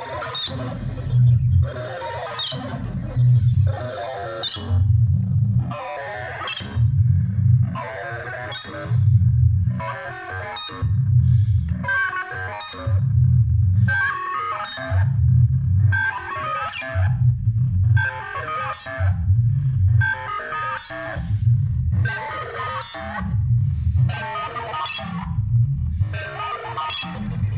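Korg volca synthesizers playing a looping techno sequence: a repeating synth bass line under a plucky FM melody on a xylophone patch.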